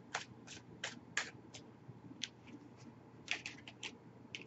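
A deck of tarot cards being shuffled by hand: a run of light, irregular card snaps, a few a second, with a quicker cluster near the end.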